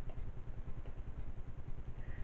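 A steady low rumble of background noise with a quick, uneven flutter, like a motor running.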